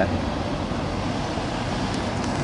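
Steady outdoor background noise, an even rumble and hiss like distant road traffic, with no distinct events.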